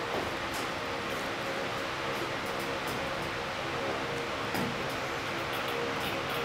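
Steady background hum holding several fixed tones, with a few faint light ticks above it.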